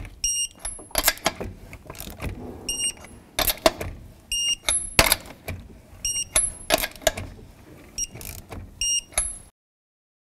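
Lug nuts being tightened to 100 ft-lb with a torque wrench: short high-pitched electronic beeps, often in quick pairs, come about every one to two seconds as each nut reaches torque, among sharp metallic clicks and clanks of the wrench and socket. The sound cuts off suddenly near the end.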